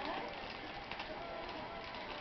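Steady hiss of room and equipment noise with a few faint soft ticks, and the tail of a spoken word at the very start.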